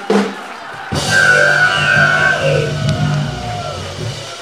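Live house band playing a short rock music sting, kicking in suddenly about a second in and holding steady until near the end.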